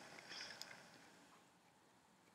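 Near silence: room tone, with a faint brief hiss about half a second in.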